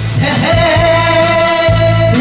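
A woman singing into a karaoke microphone over a loud karaoke backing track with a steady bass beat; her voice comes in about half a second in and holds one long note.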